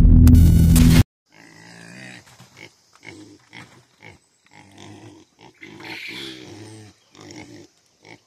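Loud intro music that cuts off abruptly about a second in, then pigs grunting in short, repeated calls, begging to be fed: they are trying to convince their keeper they're hungry.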